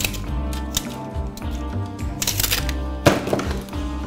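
Background music, with a steel tape measure rattling and a sharp snap about three seconds in.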